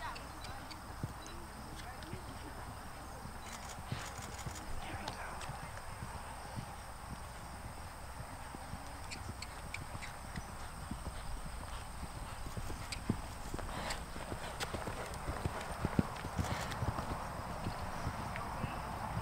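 A horse's hoofbeats thudding on a sand arena as it canters, an irregular run of soft thumps that grows louder near the end.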